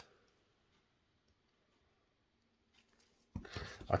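Near silence for most of the stretch, with one faint click, then a man starts speaking near the end.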